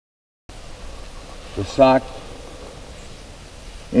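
Dead silence for about half a second, then a low, steady outdoor background hiss, with a short vocal sound about two seconds in.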